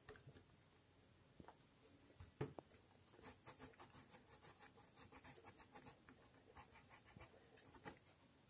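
Coloured pencil scratching on sketchbook paper, faint, in quick, even back-and-forth shading strokes that start about three seconds in. Before that, a few soft knocks.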